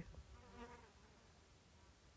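Near silence, with a faint buzzing insect in the first half second or so.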